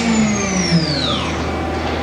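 Mori Seiki NH5000 DCG horizontal machining center spindle spinning down from its 14,000 RPM maximum: a high whine falling steeply in pitch over about a second and a half, over a steady low machine hum.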